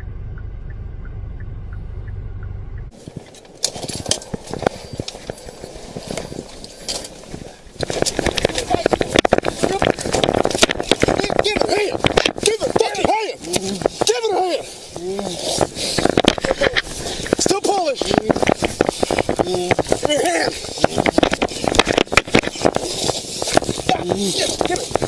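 Low rumble inside a car cabin, then a cut to a police body camera's microphone during a struggle on the ground. From about eight seconds in, loud rubbing, scuffing and knocking against the mic are mixed with short strained vocal cries.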